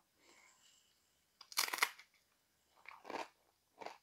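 A guacamole-loaded tortilla chip bitten with a sharp crunch about one and a half seconds in, then chewed with a few softer crunches.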